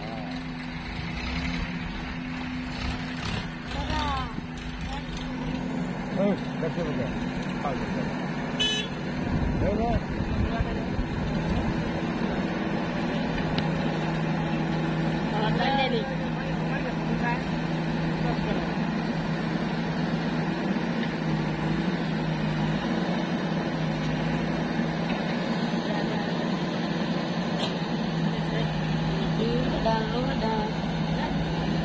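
Diesel engines of a JCB backhoe loader working its digging arm and bucket, with farm tractors running alongside: a steady engine drone that settles lower and stronger about halfway through. Distant voices sound over it.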